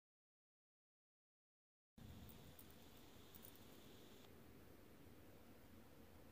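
Near silence: about two seconds of dead-silent audio, then faint steady room tone with a light hiss.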